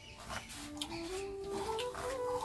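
A faint background melody of held notes stepping upward in pitch, with a few light knife taps on a chopping board.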